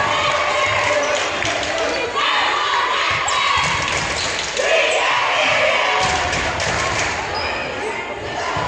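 Players and spectators talking and calling out in a large gymnasium hall, with a few thuds of a ball bouncing on the hardwood court.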